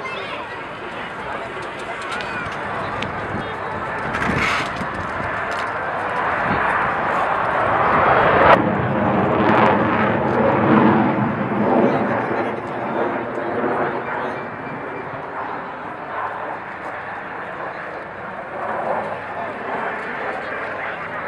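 Jet engine of a single-engine HAL Tejas fighter passing in a display: the rush builds to its loudest about eight and a half seconds in, then fades with a wavering, sweeping tone as the jet moves away.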